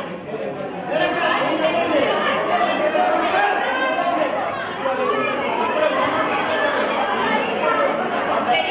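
Speech only: people talking, one voice carried over a handheld microphone, with chatter behind it.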